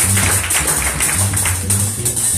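Live jazz: an upright double bass plucked in a run of low notes, one every quarter to half second, over the steady shimmer of cymbals on a drum kit.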